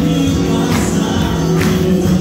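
Live church worship music: a group of voices singing a praise song over instrumental accompaniment, with a steady beat about once a second.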